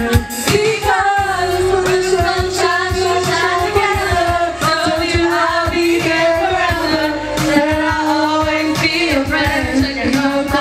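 Karaoke singing into microphones over a pop backing track with a steady beat.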